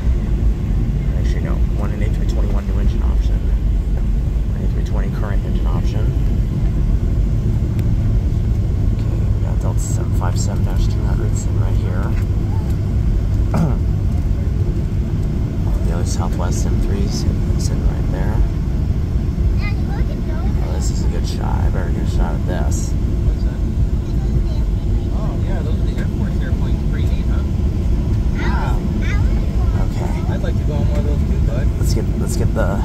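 Steady low rumble in the cabin of a Boeing 737-700 taxiing on the ground, its CFM56-7B engines at idle thrust, with scattered faint clicks.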